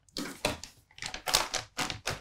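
Clear plastic film crinkling in irregular crackles as it is handled and pulled off a bowl of dough.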